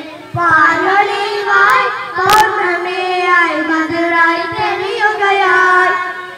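Boys singing a Meelad song, a devotional song in praise of the Prophet, into microphones. The melody is carried as one continuous line, with a single sharp knock a little over two seconds in.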